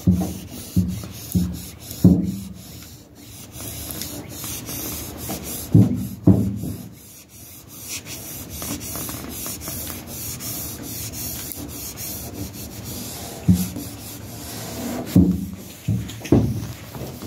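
A cloth rubbing pinstripe tape down onto a truck fender: a steady dry rubbing with several louder strokes scattered through it.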